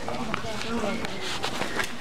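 Pedestrian street ambience: faint, indistinct voices of people nearby, with a few light knocks.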